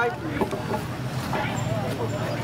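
A low steady hum under outdoor noise, with faint, broken voices of people nearby and a few soft knocks.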